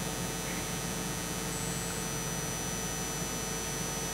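Steady electrical hum and hiss from the hall's sound system, with a thin high steady tone running through it.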